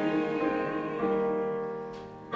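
Digital piano playing sustained chords. A new chord comes in about a second in and fades away toward the end.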